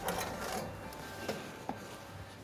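Small oven fan motor running steadily, with a few light clicks and knocks as the oven door is opened and the baking tray handled.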